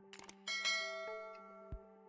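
A few quick mouse clicks, then a bright bell chime that rings out and fades over about a second: the sound effect of a subscribe-button and notification-bell animation. Soft background music plays underneath.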